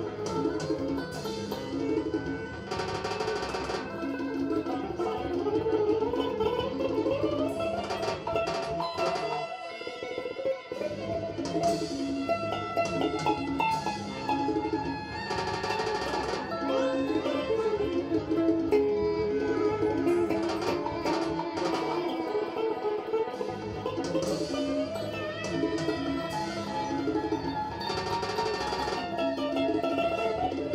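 Electric guitar played through a Roland GR-55 guitar synthesizer: continuous layered, sustained synth tones with several slow rising pitch glides.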